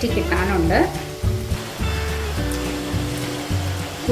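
Curry sizzling in a clay pot, stirred with a wooden spoon early on and then left to simmer, with soft background music in the second half.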